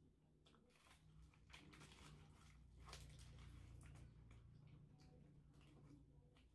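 Faint eating sounds: soft chewing and scattered small clicks of food and utensils, over a low hum that swells in the middle.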